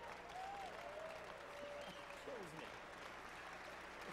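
Faint audience applause, an even clatter of clapping with a few scattered voices in it.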